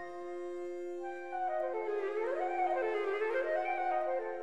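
Chamber music for flute, viola and harp: a long held low note, joined about a second in by a melody that climbs and falls in steps.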